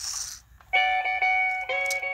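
Music starting about two-thirds of a second in from the animatronic Rock Santa's small speaker, played from a USB-stick music board as the figure is switched on, with a short hiss just before it; the notes change once near the end.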